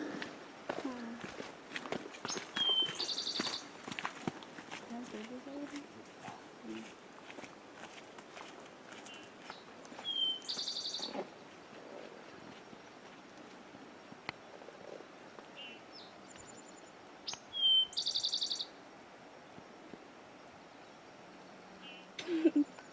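A songbird singing the same short phrase three times, about seven seconds apart. Each phrase is a brief high note followed by a fast, high trill lasting about a second.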